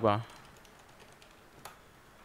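Typing on a computer keyboard: a quick run of faint key clicks, with one louder keystroke near the end.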